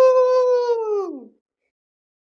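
A man's long, high 'woooo' cheer, held on one pitch and then sliding down and fading out just over a second in.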